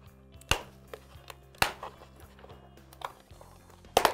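Comfort liner being pulled out of a Bell Moto-9 Carbon Flex motocross helmet: a few sharp pops as it comes free, about half a second in, at about one and a half seconds, and the loudest at the very end. Faint background music runs underneath.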